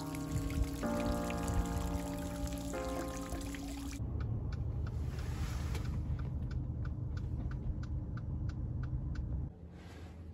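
A small garden fountain splashing under background music of sustained chords. About four seconds in it cuts to the inside of a car: a low steady engine and road rumble with a turn signal clicking about twice a second.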